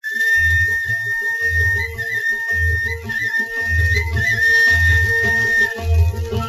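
Instrumental introduction of a 1940s Hindi film song. A high, flute-like melody line holds long notes with small ornamental turns over a steady lower drone, while a low drum sounds about once a second.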